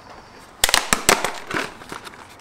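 Snap-on lid of a clear plastic tub being pried open: a quick run of sharp plastic clicks and crackles lasting about a second, starting about half a second in.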